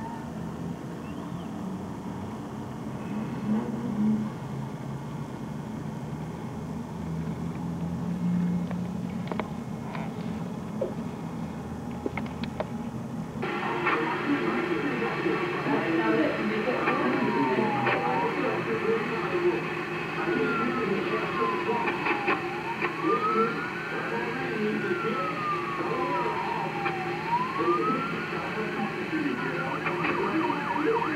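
Emergency vehicle siren wailing slowly up and down on the street below, over a din of voices and traffic. It starts about halfway in, after a steadier low city hum.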